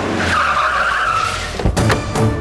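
Car tyres screeching as the car brakes hard to a stop, a squeal lasting about a second, followed by a short thud near the end.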